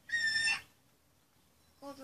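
A pet conure giving one short, high-pitched call lasting about half a second, steady in pitch and dropping at the end.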